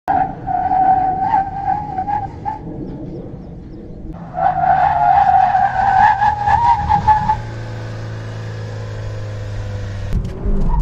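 Hyundai Alcazar's tyres squealing under hard braking, twice: a first squeal of about two and a half seconds, then after a short pause a louder one of about three seconds. A low steady hum follows after the second squeal stops.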